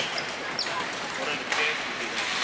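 Ice hockey play: a sharp click right at the start as sticks and puck meet at the faceoff, then skate blades scraping the ice, with spectators' voices in the rink.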